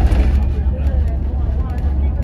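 Inside a moving Volvo B11RT coach: the steady low rumble of its diesel engine and driveline, with road noise from the tyres.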